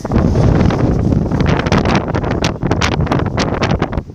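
Strong wind buffeting a phone's microphone: a loud, steady rumble broken by sharp crackles as the gusts hit.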